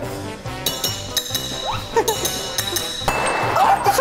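A table knife tapping a glass Coca-Cola bottle: several sharp glass clinks that ring, then the cap knocked off and the soda fizzing up in a hiss near the end. Background music runs underneath.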